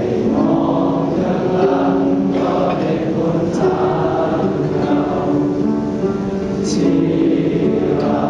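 Many voices singing a hymn together, in slow phrases of long held notes.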